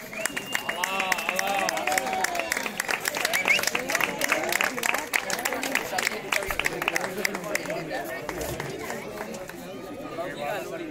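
Audience applauding, with several voices talking and calling out over the clapping. The clapping thins out about eight seconds in.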